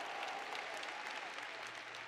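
Audience applause, many people clapping, gradually fading away.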